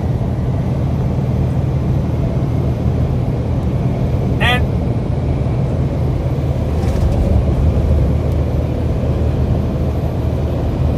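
Steady low rumble of engine and tyre noise inside a vehicle's cab cruising at highway speed.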